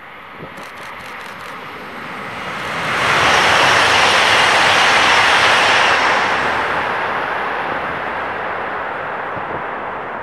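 E3 series 2000 Shinkansen train passing at reduced speed. A rushing noise of wheels and running gear swells over the first three seconds, holds loud for about three seconds as the train goes by, then slowly fades away.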